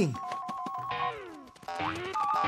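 Children's cartoon sound effects and music for a jump: short stepped keyboard-like notes, then falling pitch glides about a second in, and rising notes near the end.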